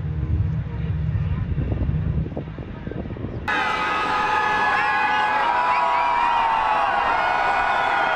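Wind rumbling on the microphone over faint street noise. About three and a half seconds in, an abrupt cut brings in a louder layer of many held and bending tones, which begins to fade near the end.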